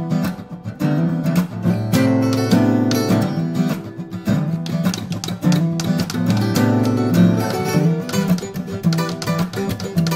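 Two acoustic guitars played together fingerstyle: a busy stream of plucked notes over ringing low bass notes.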